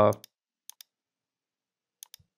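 Computer mouse clicking: a quick pair of clicks near the start and another pair under a second in, with the tail of a spoken "uh" at the start.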